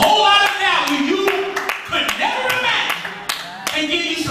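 A man preaching through a microphone and PA system, with several scattered sharp hand claps.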